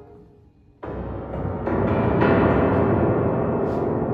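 Grand piano: after a short near-silent pause, a sudden loud, dense bass chord is struck about a second in, followed by several more struck chords that ring on together in a heavy, gong-like mass.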